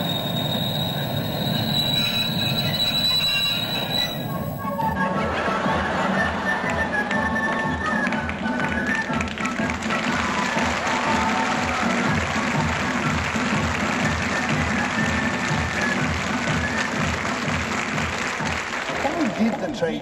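A steady high whine for about the first four seconds, then background music with a steady beat and a tune moving in short steps.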